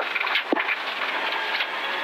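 Cabin noise inside a Toyota GR Yaris rally car at speed on a gravel stage: a steady rushing, with one sharp knock about half a second in.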